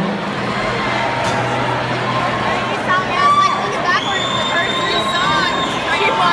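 Concert audience cheering and chattering, with a shrill whistle held for about a second and a half starting about four seconds in.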